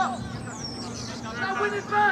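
Players shouting to one another across a football pitch, the calls getting louder in the second half, over a steady low hum.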